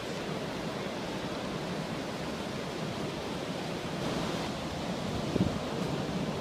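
Ocean surf: a steady rush of waves breaking and washing up a flat sand beach, with wind on the microphone.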